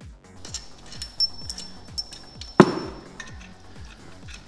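Background electronic music with a steady beat, over a few light metallic clinks of loose engine-case bolts and one louder clank about two and a half seconds in, as the cordless impact is set down.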